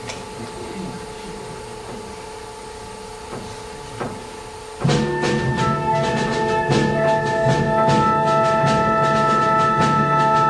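Concert wind band playing: a soft held note for the first few seconds, then about five seconds in the full band comes in loudly with sustained brass chords over steady percussion strokes.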